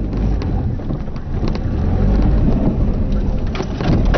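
Loud low rumbling and buffeting from a handheld camera being carried at a run, with a few short knocks.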